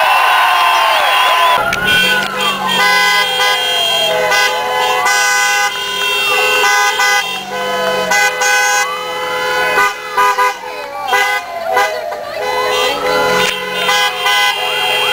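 Crowd cheering for a moment, then, after a cut, several car horns held and sounding together, with a siren wailing up and down every few seconds.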